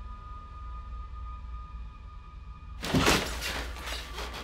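Film score: a low drone under several held high tones, cut off about three seconds in by a sudden loud crashing hit, which gives way to a harsh, noisy rumble.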